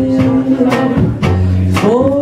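Live jazz quartet: a female vocalist holds a long sung note and slides up into the next one near the end, over plucked upright double bass, piano and a drum kit with cymbal strokes.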